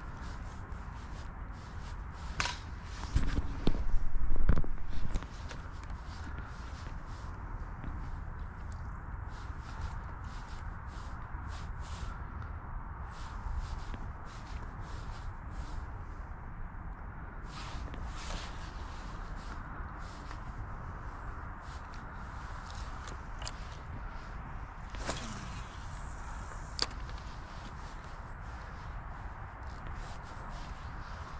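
Fishing reel being wound and rod worked through a jerkbait retrieve, heard as many light clicks and handling rustles over a steady outdoor hiss. A loud rumbling burst comes a few seconds in, and a brief swish with a sharp click near the end.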